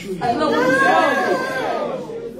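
Several voices speaking aloud at once and overlapping, amplified in a large hall: collective prayer.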